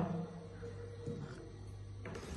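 A quiet sip of coffee from a porcelain cup, with faint short sounds about a second in, over a steady low electrical hum.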